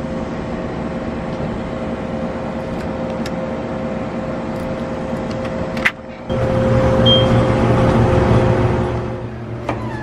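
Steady mechanical hum, with a few sharp clicks of a metal door latch, the loudest about six seconds in. After a short drop the hum comes back louder and lower-pitched for a few seconds.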